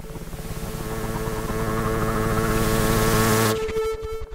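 Live laptop electronic music: a pulsing, noisy swell grows louder and brighter over a steady held tone, then cuts off suddenly about three and a half seconds in.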